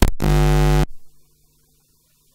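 Loud electrical buzz from a public-address system, a microphone cable being handled or unplugged, lasting just under a second before cutting off abruptly.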